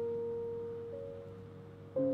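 Film score: a single soft piano note ringing and slowly fading, with a second, higher note entering about halfway.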